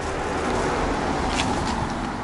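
A car driving past on the street: a steady rush of tyre and engine noise that swells in the middle and eases off. A single short click comes about one and a half seconds in.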